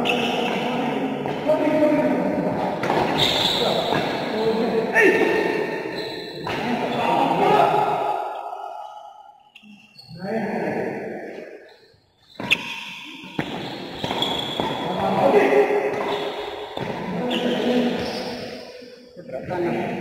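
Badminton rally in a large indoor hall: rackets striking the shuttlecock, with one sharp hit about twelve and a half seconds in, over indistinct voices of players and onlookers.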